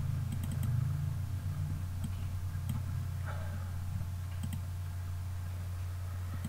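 A few scattered clicks of a computer mouse or keyboard over a steady low electrical hum.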